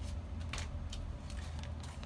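Plastic-bagged comic books being handled: several short crinkles and rustles of the plastic sleeves, over a steady low hum.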